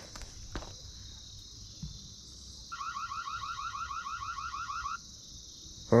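Reolink security camera's built-in siren, set off remotely from the phone app: a quick train of about a dozen rising chirps lasting a little over two seconds, starting almost three seconds in. Crickets trill steadily throughout.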